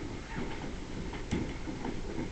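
Classroom background noise: an indistinct murmur of students' voices with scattered handling clicks, and one sharp knock a little past halfway.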